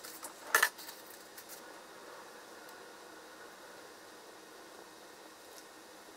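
Kitchen handling sounds at a wooden cutting board: a short, sharp double clack about half a second in, then a few faint taps over low steady hiss.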